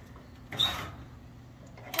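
Quiet background with a single short spoken word about half a second in. No clear mechanical or animal sound stands out.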